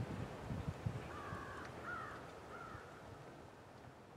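A bird gives three short calls, a little over a second apart, over a low outdoor rumble with a few low thumps in the first second. Everything fades out toward the end.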